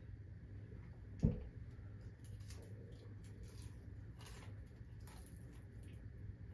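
Faint sounds of chicken wings being picked from a plate and eaten: one sharp knock about a second in, then scattered light clicks and soft squishes.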